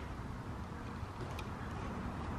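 Steady low background rumble and hiss, with one faint click about one and a half seconds in.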